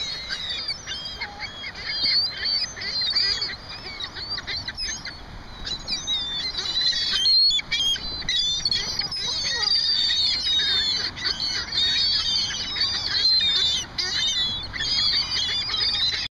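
Canada goose honking among many overlapping high-pitched bird calls that go on without a break.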